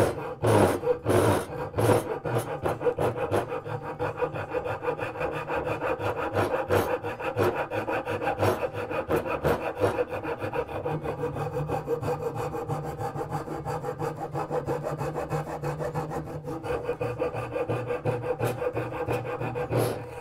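Japanese dozuki pull saw (Gyokucho Razorsaw, 240 mm) cutting a dovetail in a hardwood board on the pull stroke: a long, even run of quick rasping saw strokes that stops as the cut finishes. It is a smooth, controlled cut.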